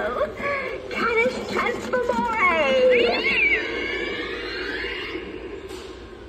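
Animatronic spell-casting witch prop playing its spell sound effects: a short stretch of voice, then a long, drawn-out cat yowl falling in pitch around the middle, then a high shimmering ring that fades away.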